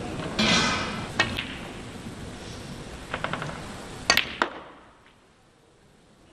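Sharp clicks of snooker balls striking each other and the cue tip hitting the cue ball: single clicks, a quick cluster about three seconds in, and two loud clicks about four seconds in. A short burst of noise comes just under a second in. The sound then drops away to near silence.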